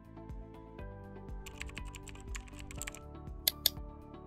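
Keyboard typing sound effect over background music: a quick run of key clicks, then two louder, sharper clicks near the end.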